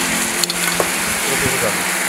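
Syrup and fruit sizzling in a hot stainless steel pan as halved figs and stone fruit caramelize, a steady hiss.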